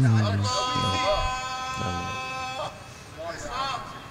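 Male Quran reciter's voice in melodic tajweed recitation, holding one long, steady note for about two seconds, then a short wavering vocal ornament near the end.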